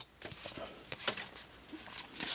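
Faint handling sounds: light ticks and rustles of Pokémon trading cards being drawn out of a freshly opened foil booster pack.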